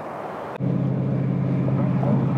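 Car engine idling steadily, heard from inside the cabin; the low, even drone comes in suddenly about half a second in.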